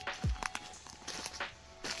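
Quiet background music with faint held tones, with a few crunches of footsteps on dry leaf litter.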